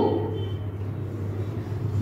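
Marker squeaking faintly on a whiteboard as a word is written, over a steady low background hum.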